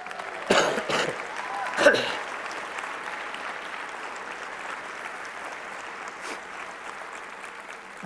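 Audience applauding and cheering in a hall, with a couple of shouts in the first two seconds; the applause slowly dies down.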